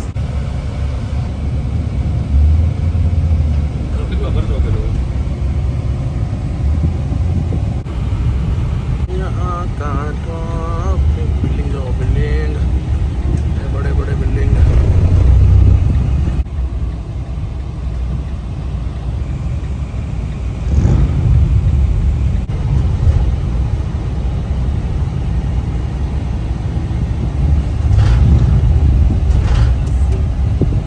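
Steady low rumble of a car's engine and tyres heard from inside the cabin while driving in slow, heavy highway traffic.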